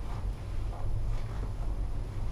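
Steady low rumble of a Leitner 3S gondola cabin's ride noise as it travels along its ropes, heard from inside the cabin.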